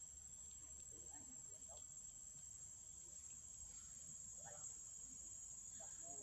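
Near silence, with a faint, steady high-pitched drone of insects.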